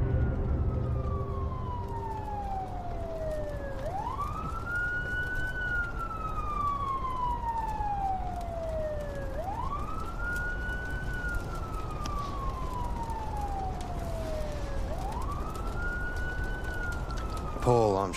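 An emergency vehicle siren wailing, its pitch rising quickly and falling slowly in a cycle of about five and a half seconds, repeated three times over a low steady rumble.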